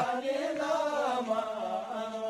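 Voices chanting a slow melodic line, with long held notes that bend gently in pitch.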